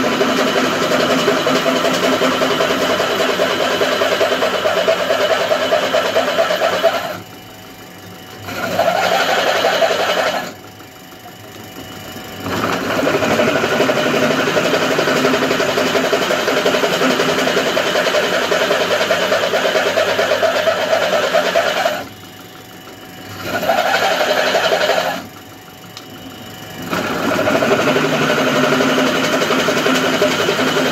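Drill press running and drilling holes in a metal candle-mould die block, a steady mechanical running sound. It drops away briefly four times, in two pairs.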